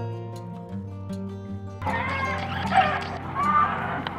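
Acoustic guitar music that cuts off about two seconds in. Outdoor farmyard sound follows, with chickens clucking in short, wavering calls.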